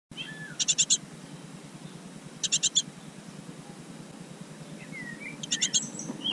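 Great tits calling in a nest box: three short bursts of four or five rapid, high chattering notes, a second and a half to three seconds apart, with a few thin sliding calls between them.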